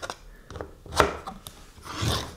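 Light scrapes and taps of a 3D-printed plastic card holder and card being handled on a wooden tabletop as the card is slid into its slot, with one sharper tap about a second in.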